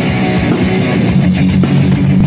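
Loud rock band playing live, with distorted electric guitars holding low chords over drums.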